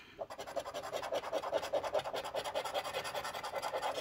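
A metal coin scratching the coating off a Cloud 9 scratch-off lottery ticket, in quick, steady, repeated back-and-forth strokes that start just after a brief pause.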